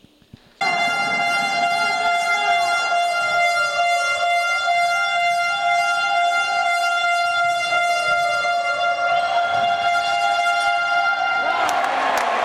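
A long, steady horn blast, one unbroken pitched tone held for about eleven seconds, over a basketball game in progress; crowd noise swells up near the end.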